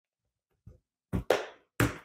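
Plastic squeegee tool scraping and prying under the edge of a fiberglass layup, working it off aluminum tape it is stuck to because no release agent was used. A faint scrape, then three sharp scrapes in quick succession in the second half.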